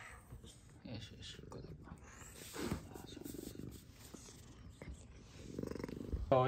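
A domestic cat purring, a low pulsing rumble that grows louder in the last second.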